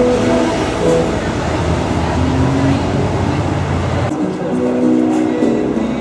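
Street traffic noise from passing cars, with voices and faint guitar music under it. About four seconds in, the traffic noise cuts off abruptly and the acoustic guitar is heard clearly, playing single notes.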